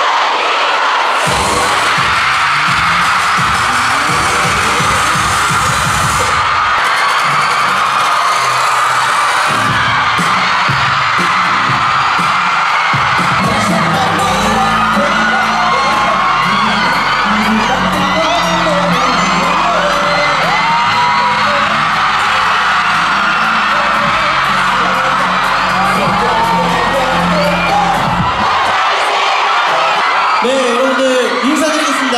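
A concert audience screaming and cheering loudly, with pop dance music and a heavy bass beat on the hall's sound system; the music comes in about a second in, and its bass line is strongest from the middle to near the end.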